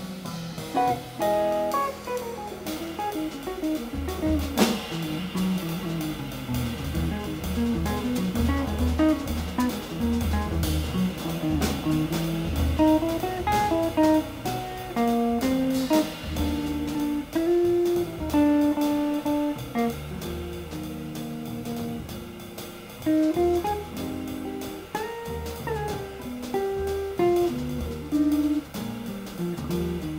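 Jazz trio playing a ballad in an open feel: a hollow-body electric guitar plays a single-note melody, with a double bass playing low notes and light drum-kit cymbal strokes under it.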